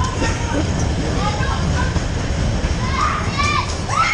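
Dodgem ride: riders and children shouting and calling out over a steady low rumble, with a cluster of high shrieks near the end.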